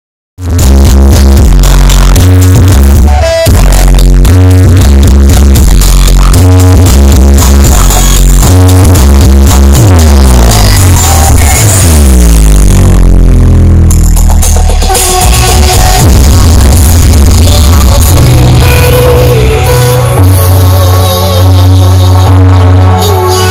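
Very loud electronic dance music with heavy, pounding bass, played through a large outdoor street sound system.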